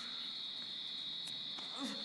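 A steady high-pitched tone, like a trill or ringing, holds unbroken throughout. A short breathy vocal sound comes near the end.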